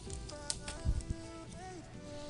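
Soft background music with held notes, with a few faint taps and clicks about half a second to a second in as hands press on the card.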